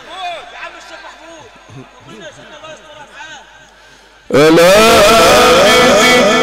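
Overlapping voices of a large crowd, then a little over four seconds in a man's amplified voice cuts in much louder, chanting a long, wavering melodic line in the style of Quranic recitation.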